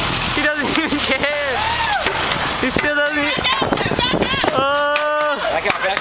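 Young people whooping and calling out with long drawn-out shouts, over the repeated knocks of a FlyBar pogo stick bouncing on pavement.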